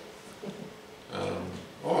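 A brief pause with faint room sound, then just over a second in a short, low vocal sound, like a hummed "mm", leading straight back into a man's speech.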